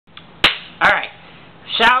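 A single sharp smack or click about half a second in, then a short vocal sound, and a man starting to speak near the end.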